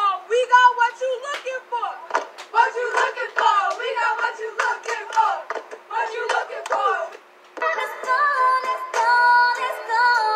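A pop/hip-hop song with rapped and sung vocals over a beat, heard thin and without bass. About seven and a half seconds in it drops out briefly and different music with long held sung notes follows.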